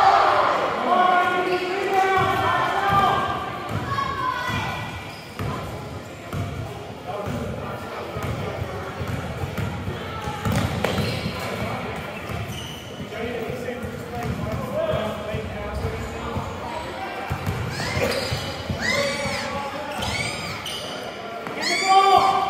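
A basketball game on a hardwood gym floor: the ball bouncing as it is dribbled, with players' voices calling out in the first few seconds, all echoing in the hall. Near the end come several high, short sneaker squeaks on the court.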